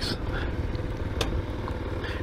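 Small motorcycle riding through a slow turn, its engine a steady rumble under wind noise on the helmet-camera microphone, with one sharp click about a second in.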